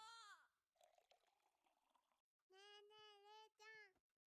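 Faint anime dialogue playing at low volume: a voice trails off at the start, then a high-pitched, childlike voice speaks from about two and a half seconds in.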